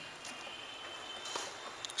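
Quiet steady background noise of an open-air court, with a few faint taps.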